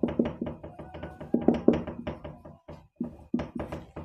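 Dry-erase marker writing on a whiteboard: a rapid run of taps and short scratchy strokes of the marker tip, with brief pauses between words.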